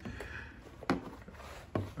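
A Mizuno Samurai youth catcher's leg guard being handled: its hard plastic shell rubs, with two light knocks, one about a second in and one near the end.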